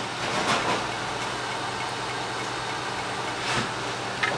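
Laboratory equipment humming steadily, with a few short handling knocks and clicks, two about half a second in and one near the end.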